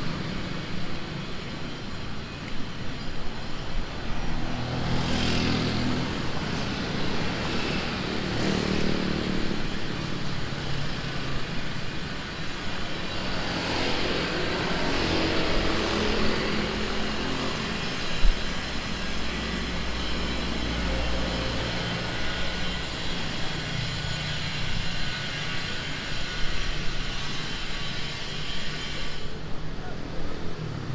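Street traffic: motorcycles and cars passing close by, their engines rising and falling as they go past, with two louder pass-bys and one sharp knock about two-thirds of the way through.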